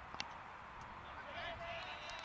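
A cricket bat strikes the ball once with a sharp crack. A second later come faint distant shouts from players on the field.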